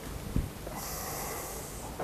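A person sniffing, a breath drawn in through the nose for about a second, after a soft knock.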